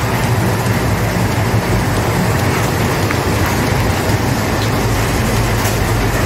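Steady rushing noise over a low mechanical hum, unchanging and fairly loud.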